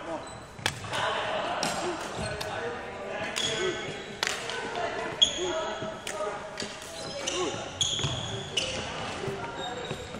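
Sports shoes squeaking on a wooden hall floor as a player moves about the court: several short, high squeaks, with sharp knocks and thuds and indistinct voices echoing in the large hall.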